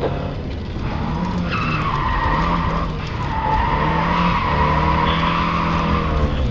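Rally car engine running hard, heard from inside the cabin. From about a second and a half in, the tyres squeal steadily on tarmac as the car slides through a left-hand turn.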